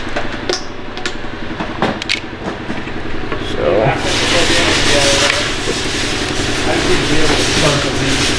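Workshop background noise: a steady mechanical hum with a few sharp clicks as a rubber coolant hose is handled. About four seconds in, a loud steady hiss starts and runs on.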